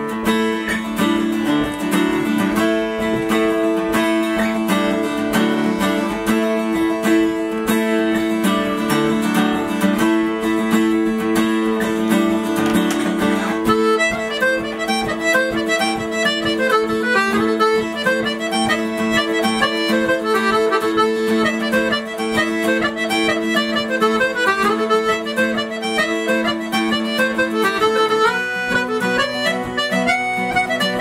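Acoustic Celtic folk jig played by a small group, with accordion holding chords over plucked guitar. A fast run of melody notes joins about halfway through, and the chords change near the end.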